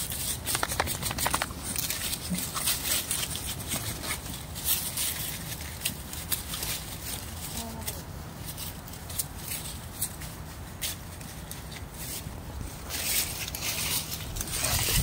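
Dry fallen leaves rustling and crunching underfoot, a quick run of short crackles that thins out in the middle and picks up again near the end.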